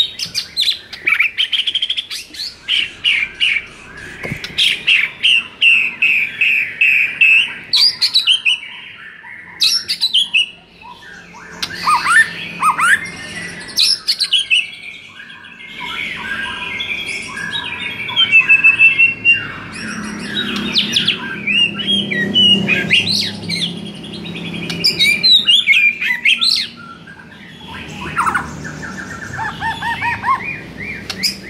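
White-rumped shama (murai batu) in full song: a loud, fast, varied run of whistles, chirps and rapid trills, phrase after phrase with only brief pauses.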